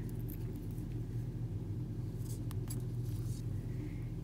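A few faint, small metallic clicks about two to three seconds in, from a metal ring stitch marker being handled and clipped back onto crochet work, over a steady low electrical hum.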